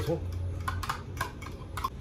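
A spoon clicking and scraping against a small cup as creamy dressing is spooned out onto shredded cabbage salad: about five light, sharp clicks spread over a second, starting under a second in.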